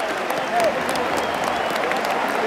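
A large football crowd in a stand clapping, many hands together, with many voices mixed in.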